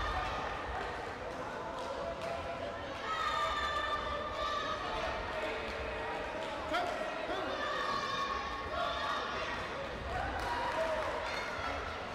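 Indistinct chatter of many voices echoing in a large sports hall, with a few dull thumps scattered through it.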